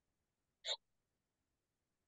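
Near silence, broken about two-thirds of a second in by one brief, faint catch of breath from a person speaking over a video call.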